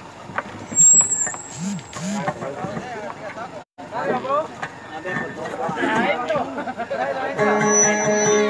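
Voices talking into a microphone, cut by a brief dropout a little before the middle. Near the end a kutiyapi, the two-stringed boat lute, starts playing steady ringing notes.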